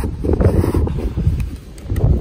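Wind buffeting a phone's microphone: a loud, irregular low rumble that eases briefly near the end.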